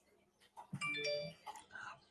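A short electronic chime of a few clear notes stepping upward, lasting under a second, about a third of the way in.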